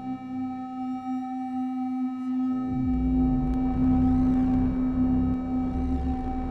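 Patched analog semi-modular synthesizers, a Dreadbox Dysphonia and a Kilpatrick Phenol, playing a drone of steady held tones. About two and a half seconds in, a pitch glides down and a low tone comes in beneath the drone, and warbling sweeps rise and fall in the highs near the end.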